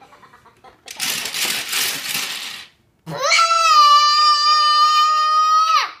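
A toddler's drawn-out, high-pitched shout of protest, "not lost!", held at a steady pitch for nearly three seconds before cutting off. It comes a second or so after a loud, breathy, hissing noise.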